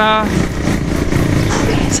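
A motor vehicle running close by on the street: steady engine and road noise without any sharp sounds.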